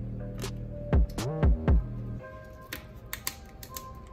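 Background music with steady held tones that fade out about two seconds in, over a few knocks and then light scattered clicks of hands handling a plastic-and-cardboard toy box as a taped-in insert is worked free.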